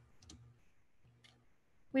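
A quiet pause broken by a few faint, short clicks: one pair shortly after the start and one single click just past the middle.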